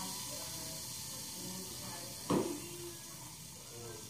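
Baking soda and vinegar fizzing in a foam cup: a faint, steady high hiss of bubbles. A single short knock comes a little over two seconds in.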